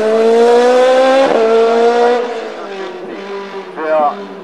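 Race car engine accelerating hard up a hill, its pitch climbing in each gear, with an upshift about a second in. Its sound fades quickly as the car pulls away into the distance.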